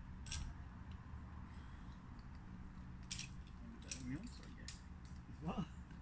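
Metal climbing gear clinking a few times in short, sharp jingles, over a steady low rumble, with a brief voice sound near the end.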